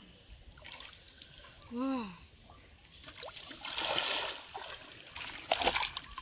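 Hands splashing and sloshing in shallow water among grass while feeling for fish, loudest in a run of sharp splashes near the end. A short vocal sound comes about two seconds in.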